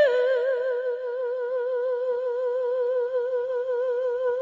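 An unaccompanied voice holding one long note with an even vibrato, like the opening of a ballad.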